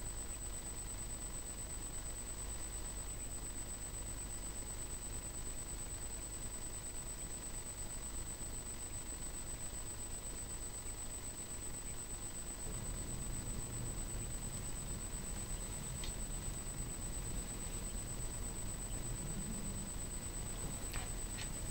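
A steady, faint high-pitched electronic whine runs through, with weaker steady tones beneath it, over a low hum and hiss. The low hum thickens about two-thirds of the way in.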